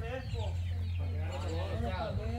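Several chickens clucking, a dense run of short calls over a steady low rumble.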